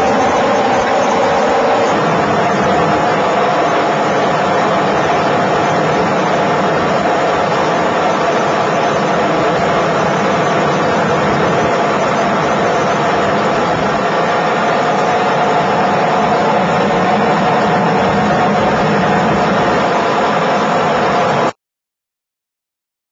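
Steady engine and rotor noise inside a helicopter cabin, loud and unchanging, cutting off abruptly near the end.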